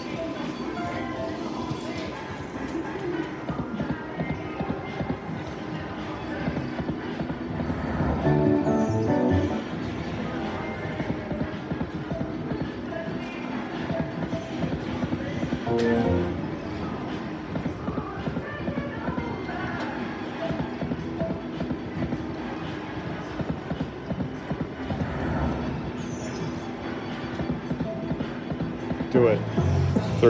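Video slot machine sounds: spinning-reel music and electronic chimes over casino background noise, with louder jingles at about eight seconds and sixteen seconds in.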